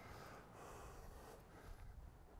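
Near silence: faint outdoor background, with a soft hiss lasting about a second.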